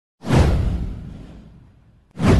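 A whoosh sound effect from an intro animation: one sudden swoosh with a deep low boom under it, starting about a quarter second in and fading away over about a second and a half, its hiss sweeping down in pitch.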